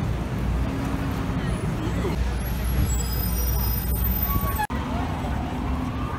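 Busy city street: steady traffic rumble mixed with the chatter of passing pedestrians. There is a brief sudden dropout about three-quarters of the way through.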